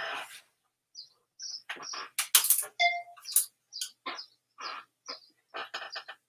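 Clothes hangers clicking and clattering against a clothing rack and each other as garments are hung up and taken down, with one short ringing clink about three seconds in.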